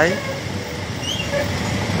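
Steady low rumble of congested road traffic, idling and slow-moving vehicles, with a short faint high chirp about a second in.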